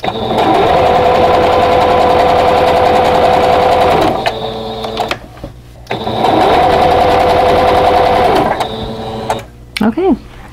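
Electric sewing machine stitching fabric pieces together in two runs: the motor runs steadily for about four seconds, slows and stops, then runs again for about two and a half seconds, speeding up as it starts and winding down as it stops.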